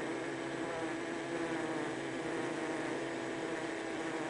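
Steady hum of a honeybee colony in the hive, one held tone with overtones that rises slightly in pitch about a second in. The beekeeper reads this working sound as nearly the whole colony busy processing sugar syrup into winter stores.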